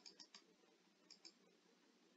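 Faint computer mouse clicks: a quick run of four at the start and a pair about a second in.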